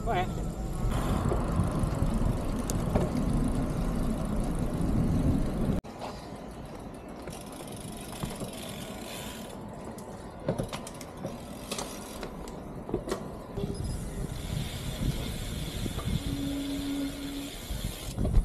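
Road traffic noise, a vehicle passing and swelling, for the first six seconds, then a sudden cut to a quieter car-park ambience with scattered clicks and a short steady hum near the end.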